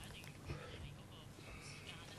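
A pause in speech: faint room tone through the meeting microphones, with a soft, brief sound about half a second in.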